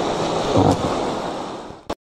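Rushing whitewater of river rapids around a raft, with wind on the microphone. The sound fades near the end and stops with a click.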